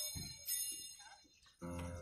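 Two strikes of a small, bright bell about half a second apart, each fading quickly. Sustained keyboard music then starts about one and a half seconds in.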